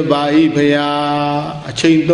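A Burmese Buddhist monk's voice intoning one long, level note, as in chanted Pali recitation within a sermon. The note breaks off near the end.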